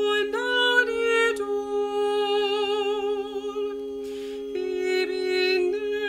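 A mezzo-soprano voice singing in layered, unaccompanied parts: one part holds a long steady low note beneath slower upper lines with vibrato. A short breath is heard about four seconds in.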